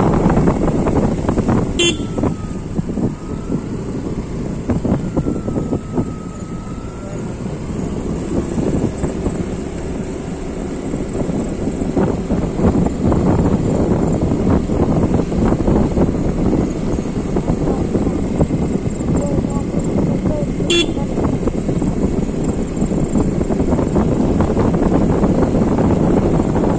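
Steady wind and road noise from a vehicle moving along a wet road, with two brief clicks, one about two seconds in and one near the end.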